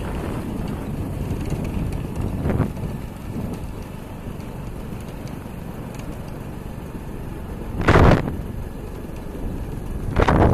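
Wind buffeting the microphone: a steady low rumble, with a brief gust at about two and a half seconds and a much louder one about eight seconds in.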